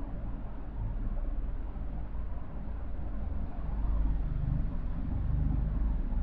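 Steady low background rumble with a faint hiss and no distinct events.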